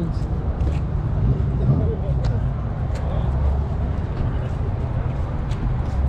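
Car engine running at low revs, a steady low hum as the car rolls slowly, with a few light clicks.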